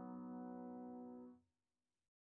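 Addictive Keys sampled piano plugin sounding a held chord that rings on steadily, then cuts off suddenly about one and a half seconds in as playback is stopped.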